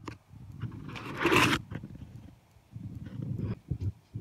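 Rustling and scraping noise from the recording phone being handled and moved, with a short hiss about a second in.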